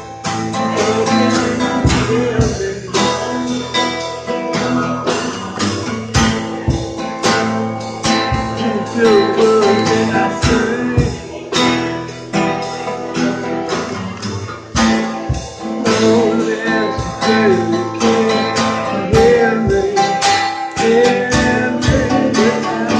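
Live acoustic guitar song: steadily strummed acoustic guitar with drums keeping a regular beat, and a voice singing over them in several stretches.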